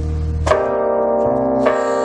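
Keyboard music: a low held note gives way about half a second in to a newly struck chord that rings on, and a second chord is struck just before the end.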